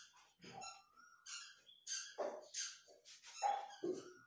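A marker squeaking and scratching on paper in a series of short, faint strokes as a word is handwritten.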